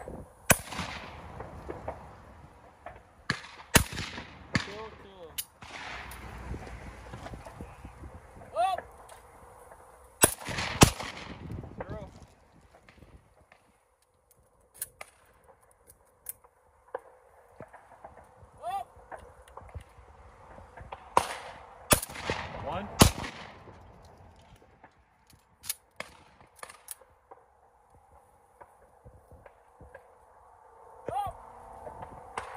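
Shotgun shots fired at clay targets, several separate reports with a short echo after each. The loudest is a pair about half a second apart near the middle, another quick run of three comes later, and fainter shots fall in between.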